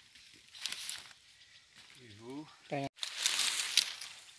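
Banana leaves rustling as they are picked up and handled close to the microphone, loudest in the last second. A short voiced sound comes about two seconds in.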